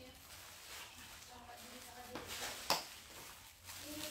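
A woman's voice speaking softly and indistinctly, with a single sharp click a little under three seconds in.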